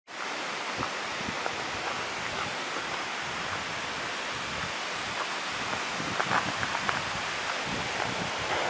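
Steady wind noise outdoors, with faint irregular footsteps on a gravel forest road.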